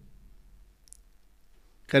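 A near-quiet pause in a man's speech with one faint, short click about a second in; his voice comes back at the very end.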